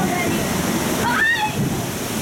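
Rushing, falling water around a log-flume ride boat, a steady wash of noise. A brief high voice rises and falls a little past the middle.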